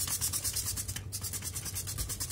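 Cleaning a stainless steel sink: a fast, even, scratchy hiss, about a dozen strokes a second, with a short break about a second in.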